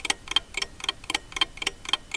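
Ticking-clock sound effect under a countdown, an even run of sharp ticks about four a second.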